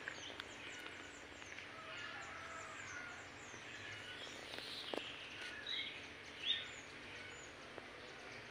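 Faint outdoor ambience with small birds chirping: a run of short, high, falling chirps, several a second, then clearer calls later on, the loudest about six and a half seconds in. A single soft click comes about five seconds in.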